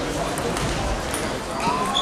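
Table tennis rally: the ball clicking off bats and table a few times, then stopping as the point ends, over a steady murmur of voices in the hall.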